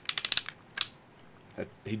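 A quick run of about six sharp plastic clicks, then one more just under a second in, from the ratcheting swivel joint of a Fans Toys Goose (Skydive) collector Transformer figure as it is turned by hand.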